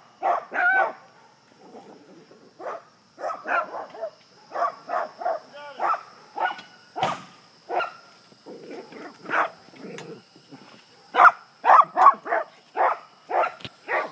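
A dog barking repeatedly in runs of short, sharp barks, with a quieter stretch about two seconds in and a quicker, louder run near the end.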